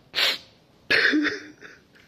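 A man coughing: a short sharp burst of breath just after the start, then a louder, rougher cough about a second in.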